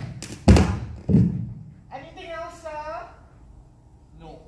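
Two heavy thuds, about half a second and a second in, then a drawn-out, wavering vocal cry lasting about a second.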